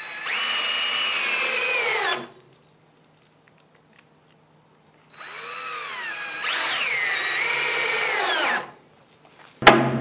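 Cordless drill driving wood screws at a slant through a 2x4 stud into the bottom plate (toenailing): two runs of the motor of about two to three seconds each, the pitch dropping as each screw seats. A sharp knock comes just before the end.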